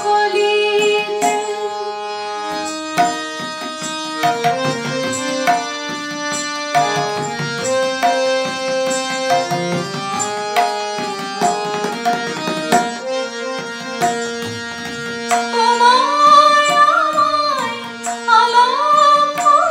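Harmonium playing a melodic instrumental interlude with percussion, its reed notes held and stepping. Near the end a woman's voice comes back in singing the Bengali melody over it.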